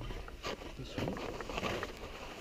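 Wind rumbling on an action camera's microphone, with scattered rustles and clicks from the paragliding harness and gear as the tandem pair get under way, and faint voices.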